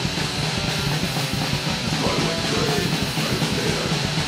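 Crust punk grind song: heavily distorted guitars and bass over drums, played loud and dense without a break.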